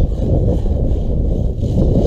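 Wind buffeting the microphone: a steady, loud rumble with no clear engine or motor tone.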